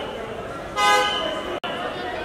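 A vehicle horn gives one short toot, under half a second, about three quarters of a second in, over the chatter of a waiting crowd.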